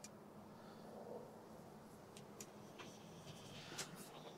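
Near silence: a faint steady low hum with a few faint ticks, the clearest just before the end.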